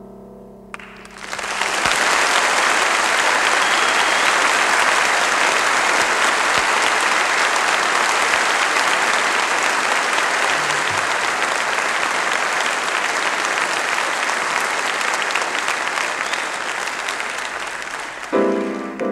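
A piano chord dies away in the first second, then an audience applauds, the clapping building within about a second and holding steady, tapering slightly near the end.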